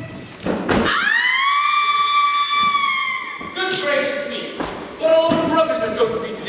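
A young performer's long, high-pitched scream, rising and then held for about two and a half seconds before it cuts off, after a thump in the first second; voices talk after it.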